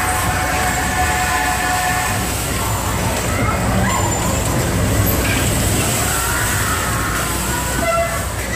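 Bumper car ride heard from a car on the rink: a steady low rumble under mixed voices, with a held tone sounding for the first two seconds.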